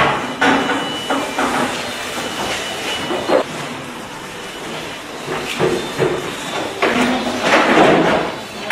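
Cleaning noises: cloths scrubbing and wiping over window frames and tabletops, in irregular swishes with the odd knock, strongest near the end.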